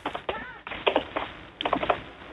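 Irregular clicks and short muffled fragments of sound heard over a telephone line, with no clear speech.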